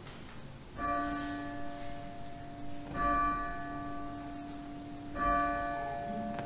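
A bell struck three times, about two seconds apart, each stroke ringing on into the next. It marks the elevation of the chalice at the consecration.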